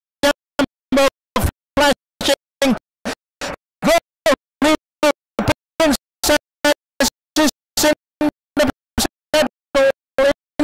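A raised voice, likely the race caller's, chopped by audio dropouts into short stuttering fragments about two or three times a second, with dead silence between them.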